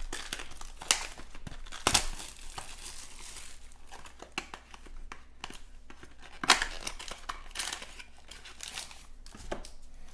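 Plastic shrink-wrap being torn and crinkled off a cardboard box of trading cards, with a few sharp snaps, the loudest about two-thirds of the way in. Near the end the card packs rustle as they are slid out of the box.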